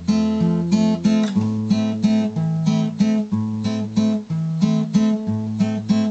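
Acoustic guitar playing an instrumental passage without voice: chords picked in a steady rhythm over a bass note that changes about once a second.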